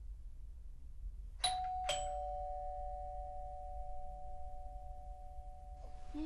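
Two-tone doorbell chime, a ding-dong: a higher note then a lower one half a second apart, about one and a half seconds in, both ringing on and slowly fading.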